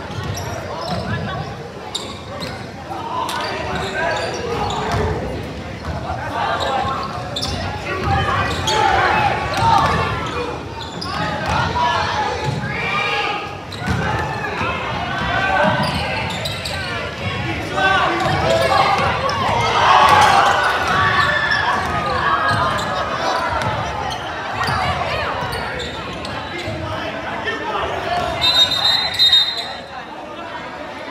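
A basketball being dribbled and bounced on a hardwood gym floor among shouting spectators and players, echoing in a large hall. Near the end a referee's whistle blows briefly.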